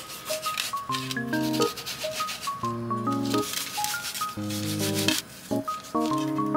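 Hands rubbing salt over halved bitter melon on a metal plate: a gritty scraping that comes and goes in strokes, thinning out about halfway and again near the end. Background music with a light melodic tune runs underneath.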